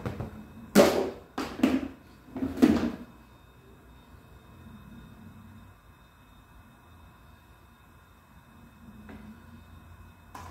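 A plastic tub being knocked three times in the first three seconds, shaking grated mozzarella out onto a pizza; after that only a faint, steady hum.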